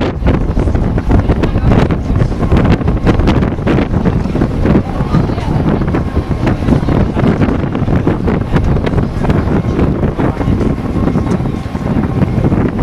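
Wind buffeting the microphone: a loud, uneven low rumble with irregular gusty thumps.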